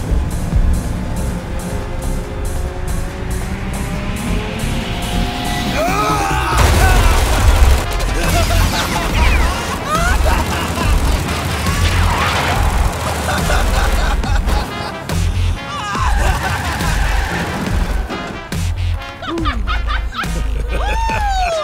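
Film soundtrack: music mixed with action sound effects, booms and crashes, growing louder and busier about six seconds in.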